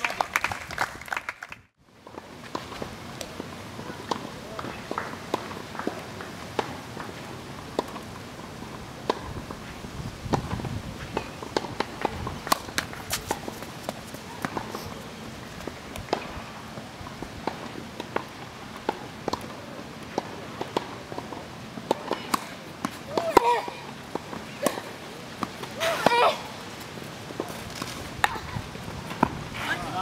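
Tennis court ambience: scattered sharp taps of tennis balls bouncing and being struck, over a steady outdoor background. There is a brief dropout about a second and a half in, and two short voice sounds come about three quarters of the way through.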